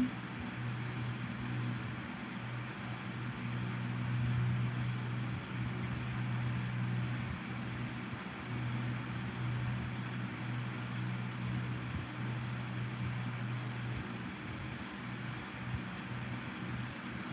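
A steady low mechanical hum with an even hiss behind it, unchanging throughout.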